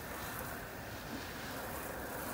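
Garden hose nozzle on its shower setting spraying a steady stream of water over fishing rods and a reel.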